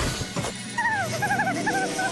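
A cartoon impact sound effect, two quick thumps as a treasure chest lands, followed by a small cartoon character's high, wavering whimper-like vocal sounds in short warbling runs over background music.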